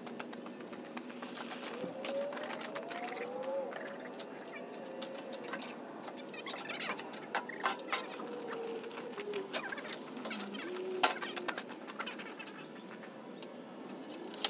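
A garden fork working compost in a wooden-sided cart: scraping, with scattered sharp knocks and clicks as the fork strikes the cart, the loudest about three-quarters of the way through. Faint gliding tones sound in the background.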